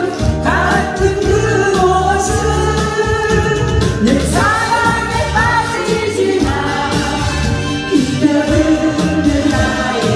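A woman sings a Korean song into a microphone through the hall's PA, holding and sliding between notes, over a keyboard accompaniment with a steady bass line and beat.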